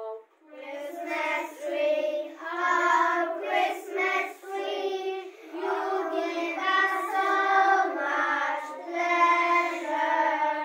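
A group of young children singing together in unison, in short phrases with brief breaths between them.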